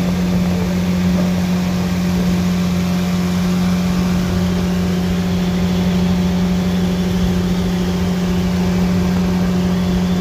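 Outboard jet boat motors running steadily at speed side by side, with water rushing and spraying off the hulls.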